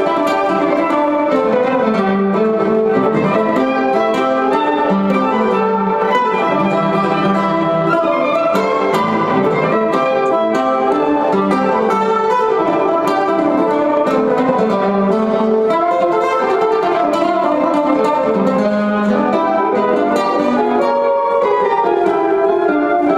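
Live acoustic jazz played on violin and two guitars, an acoustic guitar and an archtop jazz guitar, continuous at an even level.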